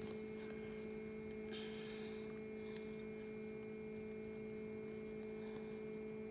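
Small egg incubator's fan motor running with a steady hum, several steady tones held throughout. A brief faint hiss comes about a second and a half in.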